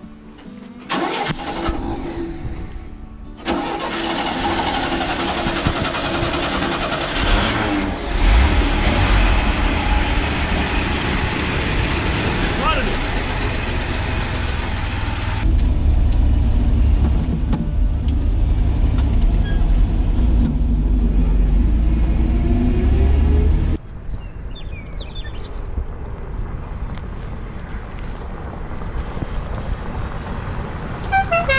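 1964 GMC pickup's 305 V6 engine cranked over by the starter and catching about a second in, then running and revved. Later it is heard as a heavier low-pitched run while the truck drives. It drops abruptly to a quieter, more distant engine sound about six seconds before the end.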